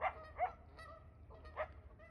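Three short, faint animal calls, each falling in pitch, the first at the very start, the next about half a second later and the last about a second after that.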